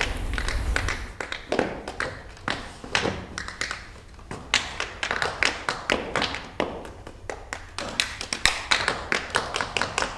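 Tap shoes striking a stage floor in sparse, irregular taps and small clusters of strikes as seated tap dancers play a rhythm with their feet.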